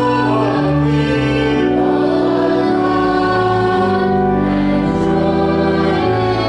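Congregation singing a hymn with church organ accompaniment. The organ holds sustained chords that change every second or so under the voices.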